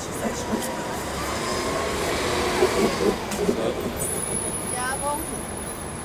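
City transit bus pulling away from a stop over street traffic noise, its drive whine rising and falling over a couple of seconds.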